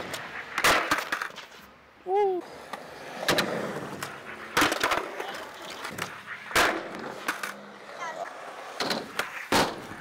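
Skateboard wheels rolling on concrete, broken by a series of sharp board pops and landings, the deck and wheels cracking down on the concrete several times.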